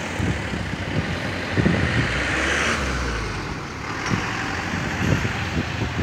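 Street traffic: motor vehicles running at a road junction, with one vehicle passing close by about two to three seconds in.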